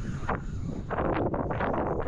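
Wind buffeting the microphone: a steady low rumble with rushing gusts of noise that build through the second half.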